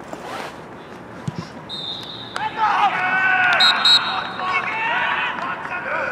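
Referee's whistle sounding one long, steady blast, marking full time, with players' voices shouting over it.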